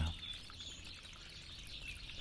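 Faint birdsong over a quiet outdoor background.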